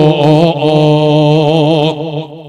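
A man's voice holding one long chanted note, wavering slightly in pitch, breaking off near the end. It is a preacher drawing out a line of his sermon in a sung, chant-like delivery.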